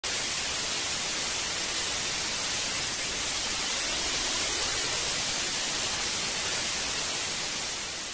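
Steady hiss of static white noise, easing off slightly near the end.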